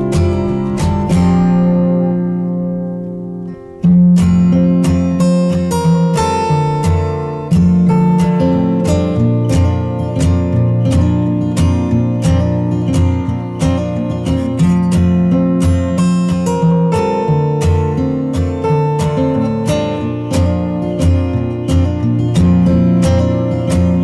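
Background music led by a strummed acoustic guitar with a steady beat. It fades down a couple of seconds in, then starts again abruptly about four seconds in.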